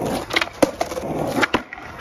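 Skateboard wheels rolling on rough asphalt, broken by several sharp clacks of the board, the last ones as the skater pops it up onto a concrete ledge.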